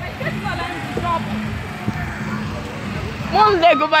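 Faint talking and laughter over a steady low rumble, then a loud voice near the end.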